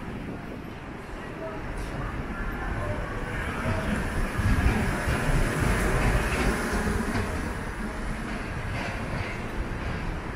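A heavy vehicle passing on a city street: a low rumble swells from about three seconds in, is loudest around the middle, then eases off over steady street noise.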